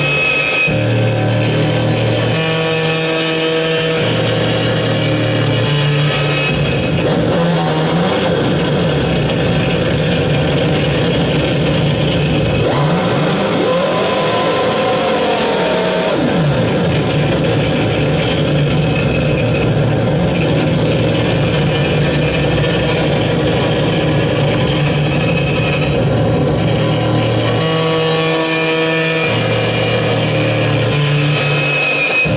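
Live noise music played on electronics and effects: a loud, harsh, continuous wash of distorted sound over low droning tones that cut in and out. Near the middle, wavering pitch sweeps rise and fall in arcs.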